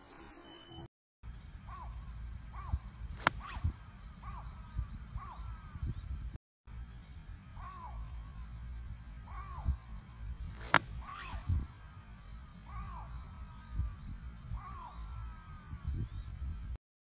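Two sharp cracks of a golf iron striking the ball off a driving-range mat, about seven and a half seconds apart. Birds call repeatedly in the background over a low wind rumble.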